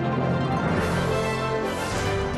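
Television news theme music with held notes over a low bass line, at a steady level.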